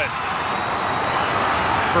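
Ice hockey arena crowd cheering and yelling at a fight on the ice, a loud, steady din.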